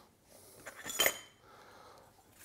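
Aluminium extrusion lengths knocking together as they are lifted out of a cardboard box, giving one short metallic clink with a brief ring about a second in, over light handling rustle.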